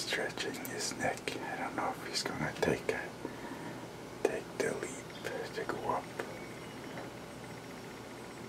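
A man whispering in short, broken phrases, with scattered clicks and rustles.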